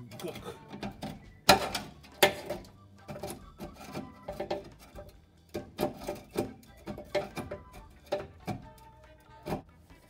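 Screwdriver scraping and prying at old tar and sealer in the brake-line channel of a 1974 VW Beetle's floor pan, with irregular metal clicks and knocks as it digs for a hidden line clip. The two sharpest knocks come about one and a half and two seconds in.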